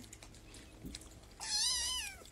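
Kitten meowing once, about one and a half seconds in: a single high, wavering mew that drops in pitch as it ends.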